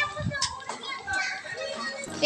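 Children's voices: chatter and calls of children at play.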